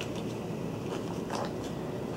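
Faint rustle and light tap of card-stock paper model pieces being handled and fitted together, over a steady low room hum; the clearest tap comes about a second and a half in.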